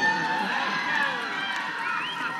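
Audience crowd noise: many voices at once, cheering and calling out.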